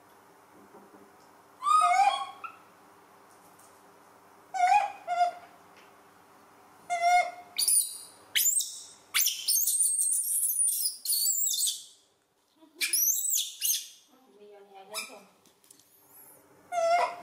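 Young macaque monkeys calling: three short, high, wavering coos a couple of seconds apart, then a long run of shrill, high-pitched squeals in the second half, with a brief break near the end.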